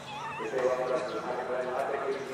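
A man's voice over a public-address loudspeaker, announcing the run. Near the start there is a brief wavering high-pitched sound.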